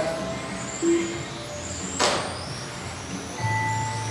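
Electric 1/10-scale RC touring cars with 21.5-turn brushless motors racing, their high motor whines rising and falling in pitch as they accelerate and brake. A sharp knock about two seconds in, and a steady electronic tone with a low hum near the end.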